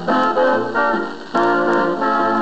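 A 1938 dance band foxtrot playing from a 78 rpm record, an instrumental passage with no vocal. The band strikes chords on the beat, then holds them steadily from about two-thirds of the way in.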